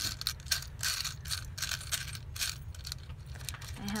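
Small craft bits clicking and rattling in a drawer as a hand rummages through it, busiest in the first couple of seconds, then a few scattered clicks.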